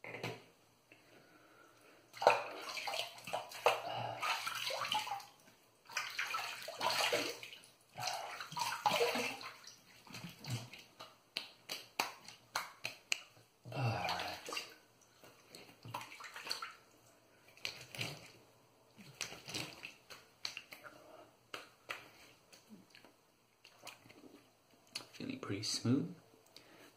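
Water splashed onto the face by hand to rinse off shaving lather, in several noisy bursts of a few seconds with short pauses between.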